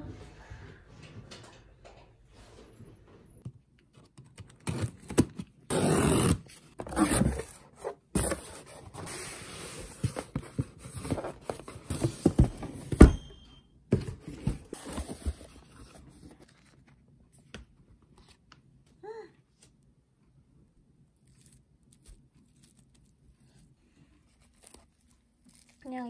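A delivery parcel's packaging being torn and handled: several loud tearing and crinkling bursts in the first half, then lighter rustling that dies away to near quiet.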